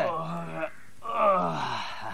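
A sleeping man snoring in a drawn-out, moaning cartoon style: two long snores, each falling in pitch, the second longer.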